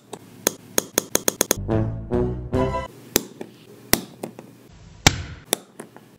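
Piezo igniter from a barbecue lighter snapping about ten times at an uneven pace, firing sparks between two wire ends. A few seconds of background music sound with them.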